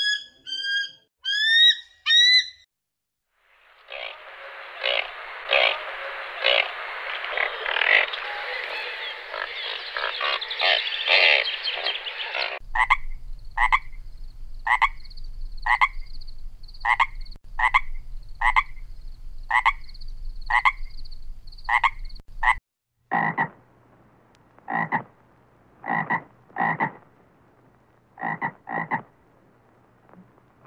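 Frogs croaking: a dense chorus first, then single croaks repeated about once a second, then a looser run of croaks, some in quick pairs. In the first two seconds or so, shrill calls from a bird of prey.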